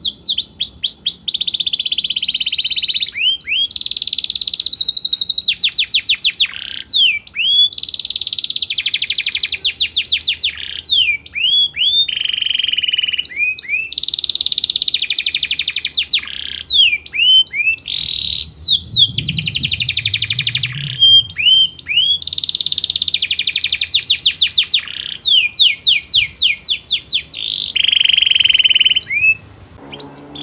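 Domestic canary singing a long, almost unbroken high-pitched song of rapid trills and runs of repeated notes, changing to a new phrase every second or two, with a short break just before the end.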